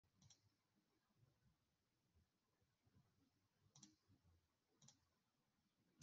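Near silence, broken by three very faint, short clicks: one near the start, then two more about a second apart towards the end.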